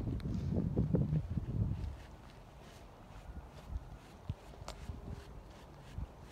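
A stiff dandy brush worked over a horse's coat in short strokes, with rough low rumbling noise in the first two seconds, then quieter with a few faint scrapes.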